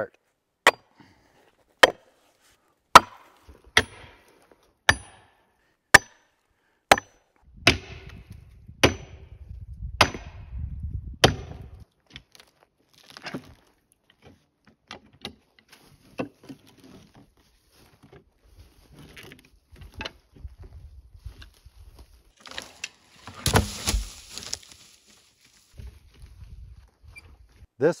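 A wedge being driven into the chainsaw cut of a large fir log: about eleven sharp, evenly spaced strikes, roughly one a second, with a low rumble under the last few. Lighter knocks follow, then a short noisy burst, as the log is worked apart along the cut.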